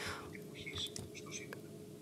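A short pause in a speech, with faint breathy voice sounds over a steady low hum and background noise.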